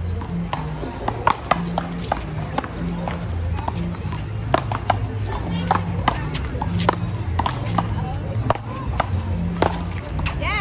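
Paddleball rally: a rubber ball sharply cracking off solid paddles and the wall, about once every half second to a second. Music with a steady bass line plays underneath.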